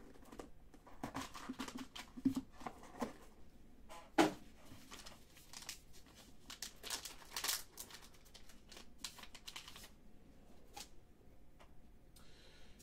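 Hands handling a box of trading cards and a foil card pack: light rustles, clicks and crinkling of the foil wrapper, with a sharper click about four seconds in.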